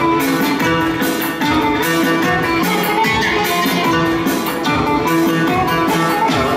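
Live Turkish folk dance music led by a plucked string instrument, with a steady quick beat.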